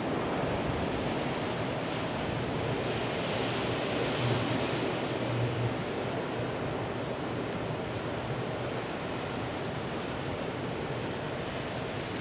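Downed high-voltage power line arcing and burning: a low electrical buzz that swells briefly twice around the middle, under a steady rush of storm wind and rain on the microphone.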